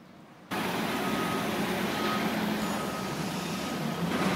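Heavy diesel vehicle running, starting suddenly about half a second in, with a reversing alarm beeping about once a second.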